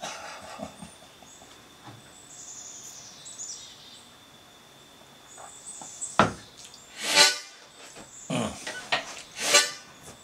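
A harmonica blown in three short loud reedy bursts from about six seconds in, just after a sharp knock, with a low falling vocal note between the bursts. Faint bird chirps are heard in the quieter first half.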